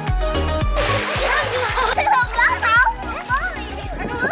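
A splash of water lasting about a second, followed by children's high-pitched shouts, over background music with a steady beat.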